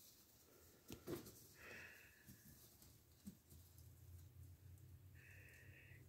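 Near silence: room tone, with a few faint soft taps about a second in and again near three seconds.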